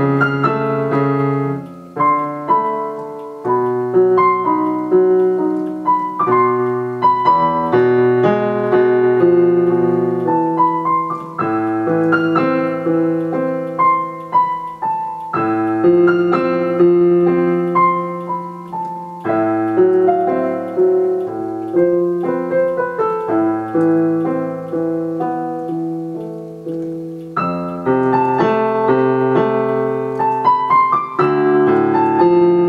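Digital grand piano played two-handed: a solo piece in A minor, with steady runs of notes over held chords that change every few seconds.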